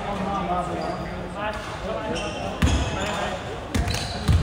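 A basketball bounced on a hardwood gym floor, twice in the second half, as a player dribbles at the free-throw line before shooting. Voices talk in the background.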